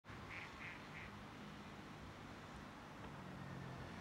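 A duck quacking faintly three times in quick succession in the first second, over a low steady hum.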